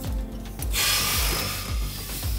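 A hand brake lever ratcheting for about a second as it is pulled on, with background music keeping a steady low beat underneath.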